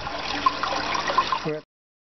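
Water splashing and pouring into a fish tank as dissolved sea salt solution is tipped in from a bucket. It cuts off suddenly about one and a half seconds in.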